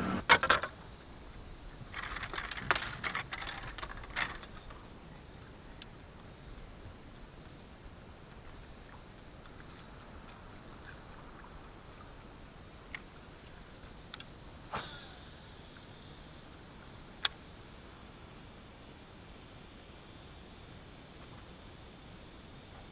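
Knocks and rattles of a camera being handled in the first second and again a couple of seconds in, then a quiet steady hiss with a few isolated sharp clicks.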